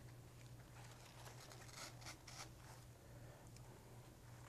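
Near silence: faint, scattered rustling of flower stems and foliage being handled and pushed into an arrangement, over a low steady hum.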